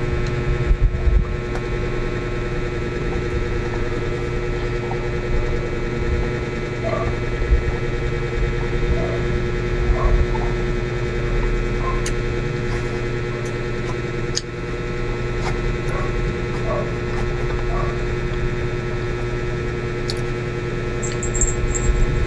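A steady electrical hum made of several steady tones, with a low rumble beneath. Over it come a few faint eating sounds and soft clicks of a metal fork against a styrofoam food box.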